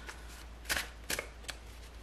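A tarot deck being shuffled by hand, packets of cards lifted and dropped from one hand to the other, giving about four short, soft card rustles.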